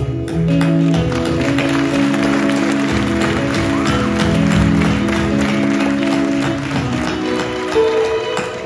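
Live stage band playing an instrumental passage of a South Indian film song: held keyboard chords that change every second or two, over drums and percussion, with the audience applauding.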